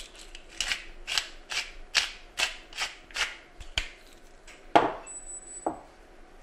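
A hand pepper mill grinding over a bowl: a run of short, even rasping twists, about two and a half a second, then a few slower ones, ending with a sharp knock near five seconds as something is set down.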